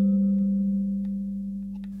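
Film score: a low, ringing bell-like note slowly dying away.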